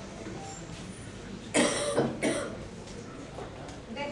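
A person coughs twice, about a second and a half in, the first cough longer than the second.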